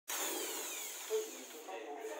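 Electric drill motor spinning down, its whine falling in pitch and fading over about a second.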